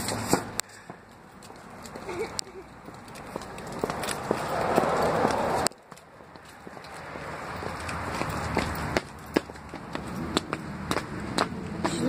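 Rustling, scratchy noise with scattered clicks from a handheld phone's microphone being moved about. The noise swells slowly and breaks off abruptly twice, once about halfway through and again about three-quarters of the way in.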